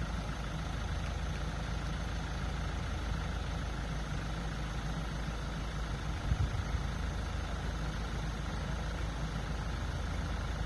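A car engine idling steadily, with a low rumble. A few brief low bumps about six seconds in.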